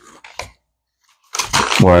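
A few faint clicks and mouth sounds, a short silent pause, then a man starts to speak through a big mouthful of chewing gum near the end.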